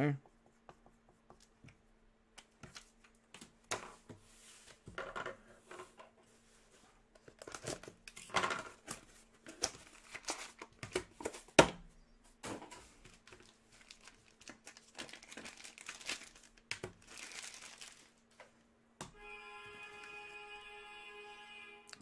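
Trading-card packaging and cards being handled: plastic wrapper crinkling and rustling in scattered bursts with light clicks, and one sharp click about halfway through. Near the end a steady held tone with several overtones comes in.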